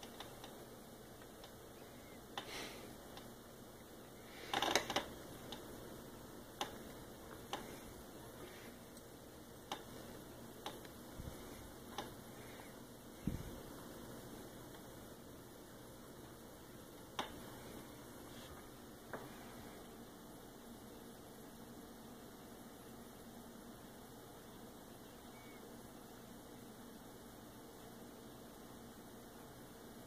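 Faint steady room hiss with scattered soft taps and clicks in the first twenty seconds, the loudest a short cluster about five seconds in and a dull thud a little after thirteen seconds; after that only the hiss.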